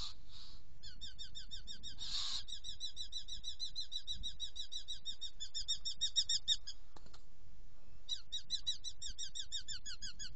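Eurasian hobbies calling: a long, rapid series of sharp, down-slurred 'kew' notes, about six a second, that breaks off about seven seconds in and resumes a second later. Two short harsh rasping calls come at the start and about two seconds in.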